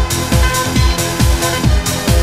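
Techno track in a DJ mix: a steady four-on-the-floor kick drum about twice a second (roughly 130 BPM), with off-beat hi-hats between the kicks and held synth tones over them.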